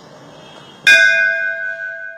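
A single struck bell chime, added as a logo sting, sounds a little under a second in and rings on with several clear tones, slowly fading.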